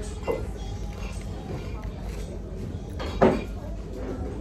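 Restaurant room sound: background music and indistinct voices of other diners over a steady low hum, with a short loud sound a little past three seconds.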